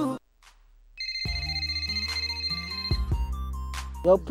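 A song cuts off abruptly, followed by a brief near-silent gap. About a second in, a telephone starts ringing with high, warbling tones for about two seconds, while a deep bass note enters underneath as the next track's intro begins.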